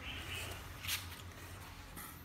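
Quiet room tone with a steady low hum, and one brief soft rustle about a second in.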